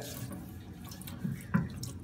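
A thin stream of tap water running steadily from a faucet onto wet sandpaper laid on a granite slab in a stainless steel sink, a soft, even splashing hiss.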